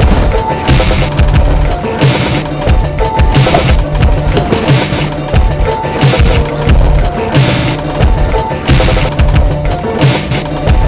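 Loud soundtrack music with a steady drum beat.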